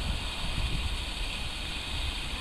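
Wind buffeting the microphone, an uneven low rumble over a steady outdoor hiss.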